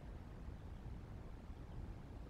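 Faint, low, fluttering rumble of wind on the microphone, with no distinct calls or other events.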